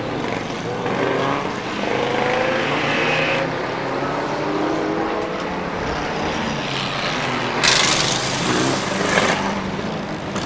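Engines of several small saloon stock cars revving up and down as they race round the track. A short loud burst of noise comes about eight seconds in, and a smaller one just after nine seconds.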